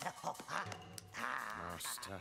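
A man's low laugh from the cartoon's soundtrack: the villain laughing, the pitch wavering up and down.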